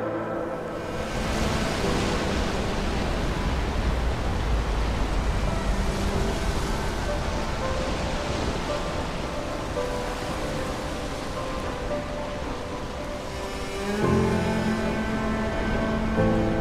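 Ocean surf washing over rocks, a steady rush of noise, with soft background music underneath. About two seconds before the end the music grows louder and fuller as the surf fades.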